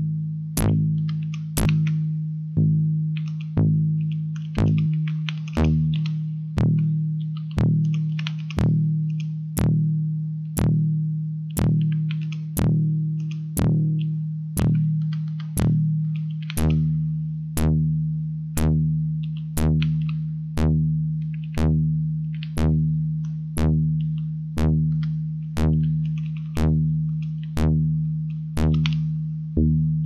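Dirtywave M8 tracker's FM synth playing the same low note about once a second. Each note starts with a sharp, gritty burst that dies away quickly into a plain low tone: the modulator's feedback is ramped down by an LFO, so the noisy feedback is heard only at the attack. The timbre shifts twice as operator settings change, the second time, about halfway through, with a deeper tone added under the note.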